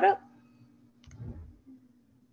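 A faint single click about a second in, followed by a brief low, muffled noise, over a faint steady hum, as picked up by a participant's microphone on an online call.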